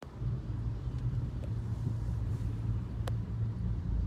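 Low, steady rumble of car engine and road noise heard from inside a car cabin in slow-moving traffic.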